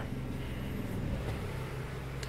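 Honda Civic's swapped-in JDM R18A 1.8-litre four-cylinder engine idling steadily, warmed up to operating temperature and running pretty good.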